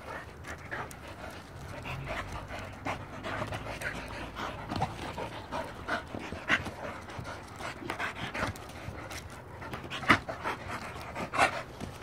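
Dogs panting hard during flirt-pole play, with scattered short knocks and scuffs.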